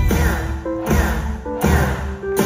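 Live rock band playing an instrumental passage: electric guitar lines over bass and drums, with three heavy bass hits.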